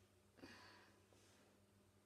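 Near silence: room tone with a steady low electrical hum, and one faint breath, a soft exhale or sigh, about half a second in.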